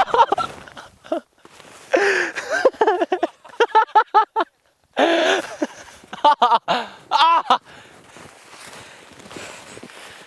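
A person laughing in short repeated bursts, broken by a moment of dead silence midway.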